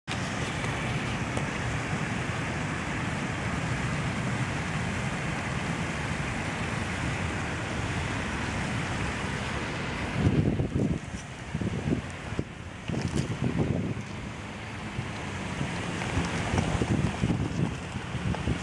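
Wind blowing across the microphone: a steady rush for about the first ten seconds, then uneven, gusty buffeting.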